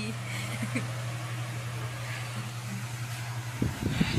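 Electric pedestal fan running with a steady low motor hum and rush of air; the hum cuts off suddenly near the end, followed by knocks and rattles.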